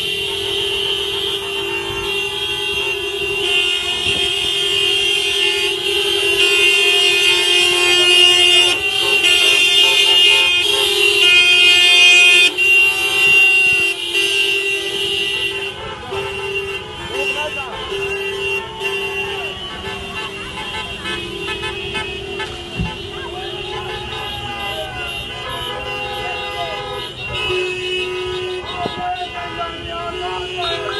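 Many car horns honking at once, held and overlapping, loudest around the middle and easing off afterwards. People's voices rise and fall over the horns in the second half.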